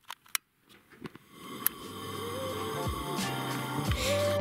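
Two sharp clicks in the first half-second, then background music fades in and grows louder, with held tones under a melodic line.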